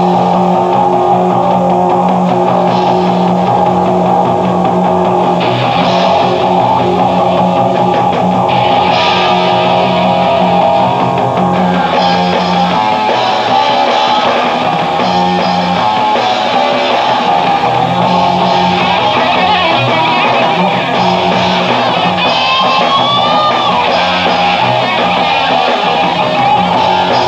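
Live blues-rock power trio playing an instrumental passage: electric guitar over bass guitar and drum kit.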